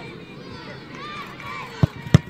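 Spectators chattering, then near the end a single sharp thud of a football being kicked: the penalty striking the ball.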